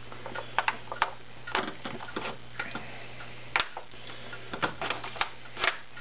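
Irregular light clicks and crinkles of a disposable aluminium foil pan being handled while bacon is wrapped around a stuffed fish in it, over a low steady hum.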